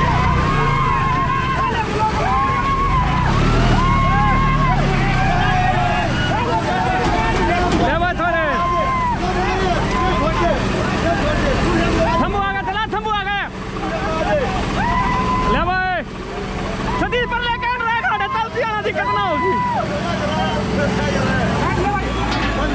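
Two diesel tractor engines, a Swaraj 855 FE and a Massey Ferguson 9500, running hard under load as they pull against each other in a tug-of-war. Several people shout over the steady engine note, which drops away near the end.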